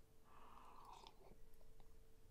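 Near silence with a faint sip from a mug: one soft slurp starting about a third of a second in and lasting under a second, followed by a few tiny mouth clicks.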